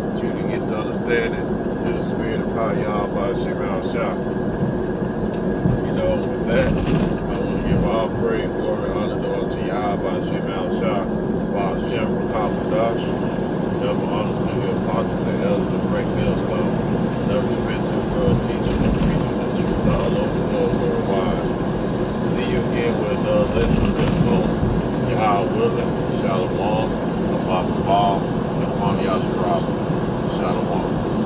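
Steady engine and road noise heard from inside a vehicle cabin cruising on a highway, with a constant low hum. Indistinct voices murmur over it at times.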